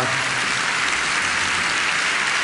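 Large audience applauding steadily in a lecture hall.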